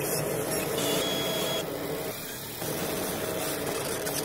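Intro logo-reveal sound effect: a loud, steady rushing noise with a faint low hum under it.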